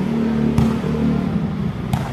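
A motor vehicle engine running with a steady low hum that fades near the end. Over it come two sharp hits, about half a second in and just before the end, fitting a volleyball being struck.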